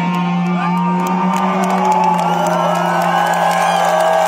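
Rock concert crowd cheering and whooping over a held low note from the band as the song ends. Many voices and whistles rise and fall in pitch above the steady tone.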